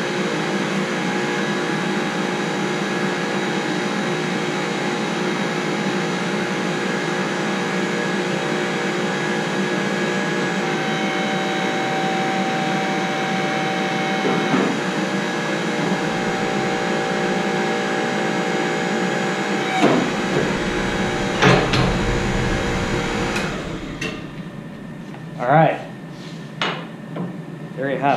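Electric-hydraulic pump motor of a JD2 tube bender running steadily while it bends a roll-cage tube to 25 degrees. A couple of knocks come near the end of the bend, the motor cuts off about 23 seconds in, and a few light metal clinks follow.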